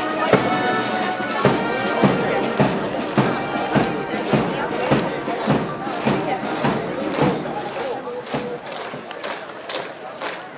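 Military marching music played by a band, with the guardsmen's boots striking the road in step about twice a second. The music fades during the second half while the regular footfalls go on.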